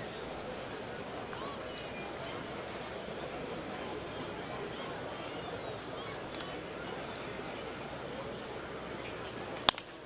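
Ballpark crowd murmuring and chatting, then near the end one sharp crack of a wooden baseball bat hitting a pitch for a ground ball.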